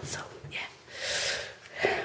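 A woman's breath: one breathy, audible inhale or exhale lasting about half a second, following a short spoken word.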